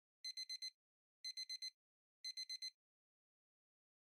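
An electronic beep sound effect: three quick runs of four short high beeps each, about a second apart, with dead silence between them.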